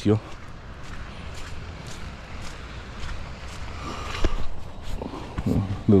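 Footsteps of a person walking on wet ground, about two steps a second, over a low steady rumble.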